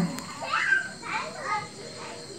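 Children's voices in the background: a few short, high calls and bits of chatter.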